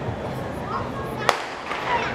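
A starting pistol fired once, a single sharp crack a little over a second in, starting a 100 m sprint heat. Under it is a steady murmur of crowd and ambient noise.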